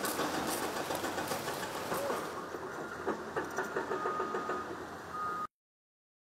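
Outdoor construction-site sound of a group walking on gravel, with a machine engine running. It cuts off abruptly about five and a half seconds in.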